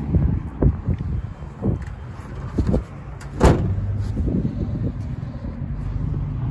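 Irregular dull knocks and thumps from handling and walking with a handheld camera, the loudest a sharp knock about halfway through, over a steady low hum.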